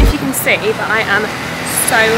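A woman's voice talking over a steady hum of street and vehicle noise; a music beat cuts off right at the start.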